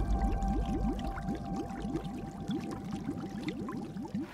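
Underwater bubbling: a rapid stream of air bubbles, each a short upward-gliding blip, several a second, over a faint held tone.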